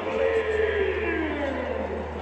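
A long drawn-out call sliding down in pitch over about a second and a half, then fading, echoing through a large arena.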